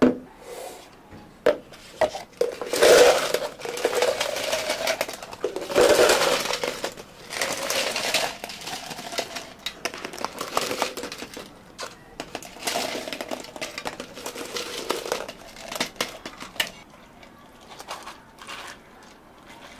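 Ice cubes scooped from an ice bin and dropped into plastic cups, a clattering rush with each scoop, several scoops in a row with sharp clicks and knocks between them.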